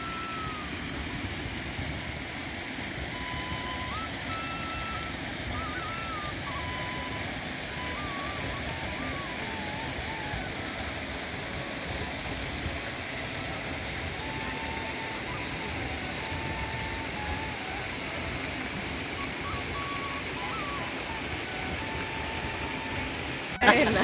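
Steady outdoor background noise with faint, short whistled notes scattered through it.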